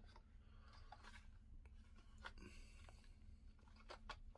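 Near silence, with faint rustling and a few light taps as a tooled leather knife sheath is handled.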